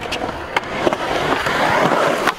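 Skateboard wheels rolling on concrete. The rolling grows louder as the board comes near, with a couple of sharp clicks.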